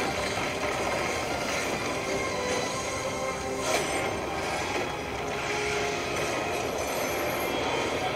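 Anime fight scene audio: dense, continuous rumbling and crashing battle effects with music underneath, and one sharp impact a little under four seconds in.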